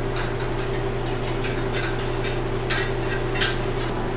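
Light metallic clinks and rattles of freshly painted red Farmall MD sheet-metal parts and their wire hangers as the parts are unhooked and taken down, a scatter of short clicks over a steady low hum.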